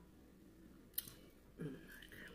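Quiet mouth and eating sounds from a person eating crispy fried fish: a single sharp click about a second in, then a short low hum-like mouth sound near the end.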